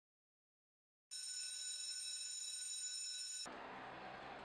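Silence, then about a second in a steady high-pitched ringing tone starts, holds without change and cuts off suddenly near the end, leaving faint room tone.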